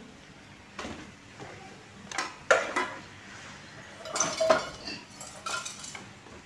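Cat food bowls and utensils clinking and clattering as cat food is served, in several separate knocks with a brief metallic ring, the loudest about halfway through.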